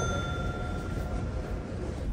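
A single bell-like chime ringing out and fading away about a second and a half in, over the steady background noise of a coffee shop.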